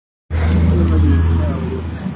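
Loud steady low rumble of a motor vehicle engine, with faint voices in the background.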